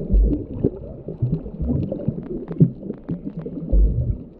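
Muffled underwater sound picked up through an action camera's waterproof housing: churning water movement with three heavy low thumps and many scattered short clicks.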